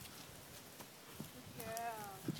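A yearling horse's hooves striking the dirt a few soft times as she moves off on the lunge. Near the end comes a short pitched call, falling at its end.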